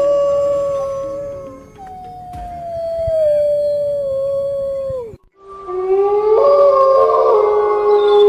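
Wolves howling. A long, slowly falling howl ends in a sharp downward drop about five seconds in. After a brief break, several howls overlap at different pitches.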